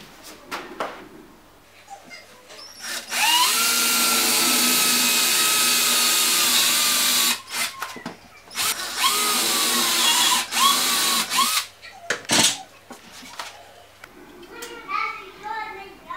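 Cordless drill with a 5 mm bit boring shallow holes into a kitchen cabinet's side panel. It spins up with a rising whine into one steady run of about four seconds, then gives two or three short bursts, followed by a sharp click.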